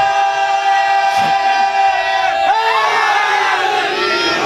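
A slogan (naara) shouted at a majlis: one long call held on a steady pitch, then rising and falling voices about two and a half seconds in.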